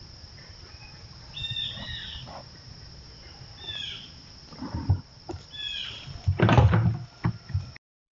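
A young American black bear pawing at a hanging plastic feeder, with loud knocks and rattles about five seconds in and again near the end as the container is knocked about against the tree. Short falling bird chirps come a few times before that.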